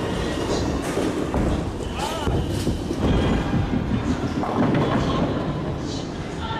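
Bowling ball rolling down a wooden lane with a steady rumble, then crashing into the pins near the end, amid the clatter of other lanes in a busy bowling alley.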